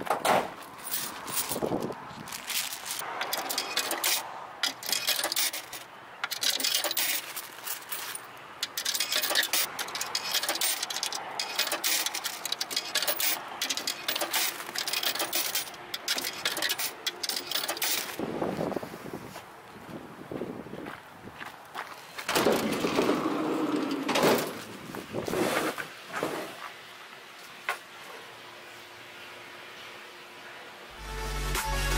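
Irregular clicks, knocks and clatter of hands handling a hose and a self-serve water vending machine, with a louder stretch of knocking and rustling about two-thirds of the way through.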